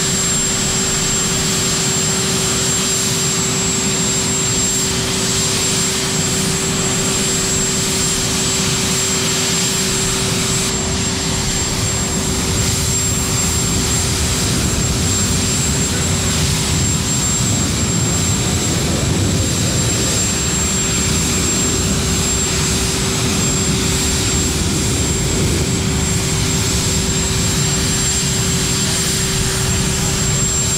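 Aircraft turbine engines running: a steady, loud rush of engine noise with a constant droning tone, unchanging throughout.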